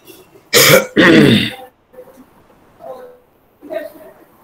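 A person loudly clearing their throat twice in quick succession, close to a video-call microphone, about half a second and a second in.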